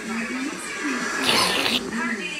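Voices from an animated film's soundtrack playing through a television speaker, recorded off the screen, with a short hiss about halfway through.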